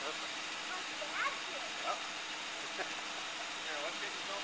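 Parked car idling quietly: a steady low hum under a hiss.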